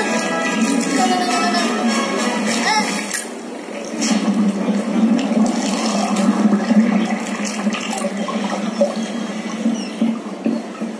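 Soundtrack of a projected dinner-table animation: music for the first three seconds, then a long rushing sound effect like gushing water that runs on to the end.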